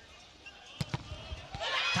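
A volleyball struck sharply once about a second in, followed by a few lighter knocks of ball and play on the court, then crowd cheering swelling near the end as the attack is blocked.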